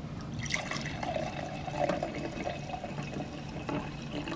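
Red wine being poured from a bottle into a stemmed wine glass, a steady stream of liquid splashing as the glass fills.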